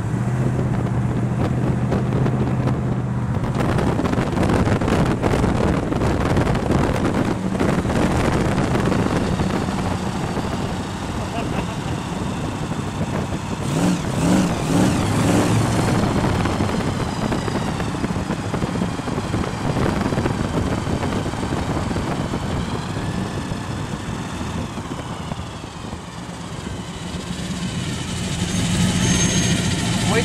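Hot rod V8 engines running as the cars roll past at low speed, over steady road and wind noise. A steady low engine note is clear for the first few seconds, and the engine note wavers briefly around the middle.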